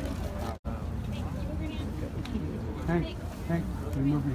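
Several people talking among themselves close by, over a steady low rumble. The sound cuts out for an instant about half a second in.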